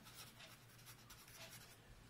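Faint scratching of a felt-tip pen on paper as a word is written.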